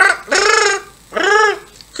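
Two long, high-pitched cackling laughs, each rising and falling in pitch, acting out the parrots bursting into laughter at the joke's punchline.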